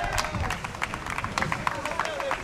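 A small group clapping by hand, with scattered, irregular claps and faint voices behind them.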